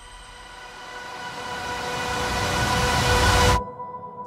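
Film soundtrack sound design: a noisy swell grows steadily louder over a held chord, then cuts off suddenly about three and a half seconds in, leaving a faint held tone.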